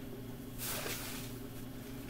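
A steady low hum under a short burst of hiss a little over half a second in.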